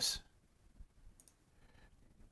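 A few faint computer mouse clicks, spread over about a second.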